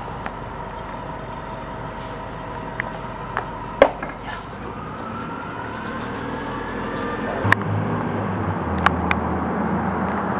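Night-time city street noise, with a vehicle drawing near: a rising engine tone, then a low hum that grows louder. A few sharp knocks come through it, the loudest a little before the middle.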